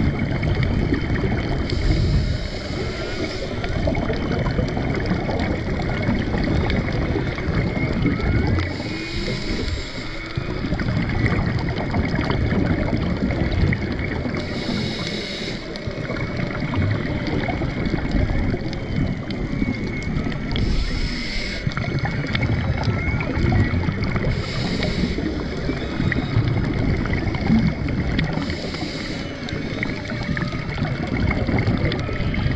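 Underwater sound on a scuba dive: a steady low rush of water around the camera, a diver's regulator exhaling bubbles in short hissing bursts every four to six seconds, and faint humpback whale song in the background.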